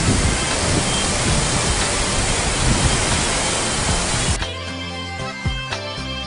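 A mountain stream rushing over rocks, a loud steady roar of water. About four seconds in it cuts off abruptly and instrumental music with sharp, picked notes takes over.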